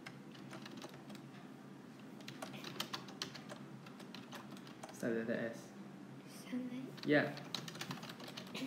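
Typing on an iPad: quick, irregular taps as a sentence is typed out letter by letter.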